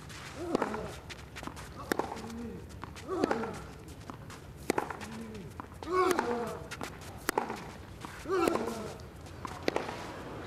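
A long tennis rally: rackets striking the ball in a steady back-and-forth, about every 1.3 seconds, some eight shots in all, each hit met by a player's short grunt.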